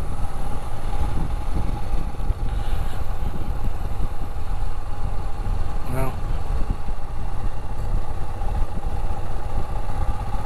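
Royal Enfield Himalayan's single-cylinder engine running while the motorcycle rides along at a steady pace, mixed with heavy wind rumble on the microphone.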